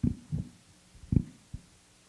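Handling noise from a handheld microphone being picked up off a table: four dull thumps within about a second and a half.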